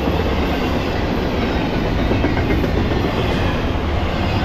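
Norfolk Southern double-stack intermodal freight train passing fast: a loud, steady rumble of steel wheels rolling on the rails under the loaded container well cars.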